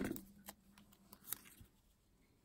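Faint handling of a cardstock strip as it is pressed flat by hand and picked up: a couple of soft taps about half a second and just over a second in, otherwise quiet.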